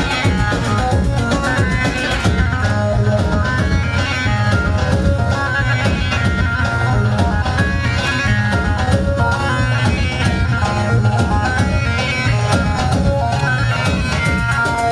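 Kurdish wedding dance music from a band, with a steady, even drum beat under a melody for the line dance.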